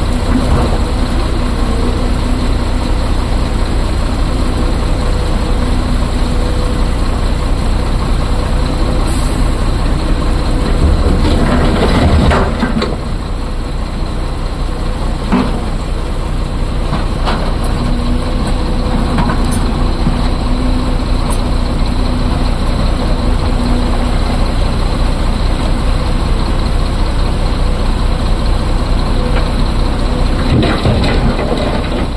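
Diesel engine of a SANY crawler excavator running steadily under hydraulic load, its note rising and easing as it digs. The steel bucket scrapes and crunches through broken quarry rock several times, loudest near the middle.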